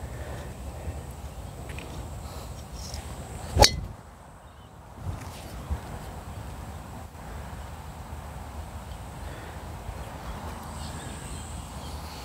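Golf driver striking a ball: one sharp crack of impact about three and a half seconds in, over a steady low rumble of wind on the microphone.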